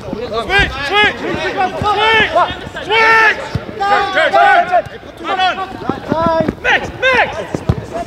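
Football players' voices calling and shouting to each other across the pitch, overlapping throughout, with a few sharp thuds of the ball being kicked.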